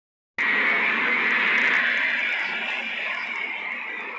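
Steady rushing noise inside a train carriage. It starts abruptly and slowly fades.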